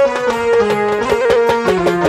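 Electronic keyboard playing a stepping melody of held notes over a drum beat with tabla-like hits: an instrumental interlude of a Baul song.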